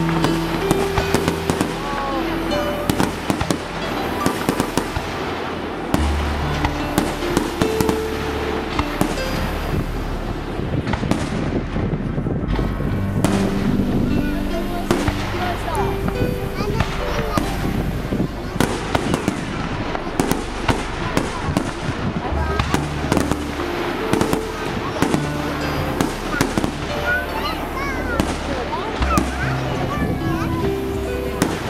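Aerial firework shells bursting in a display: a dense run of bangs and crackling, with sharp peaks from the loudest reports. It plays over music with held notes.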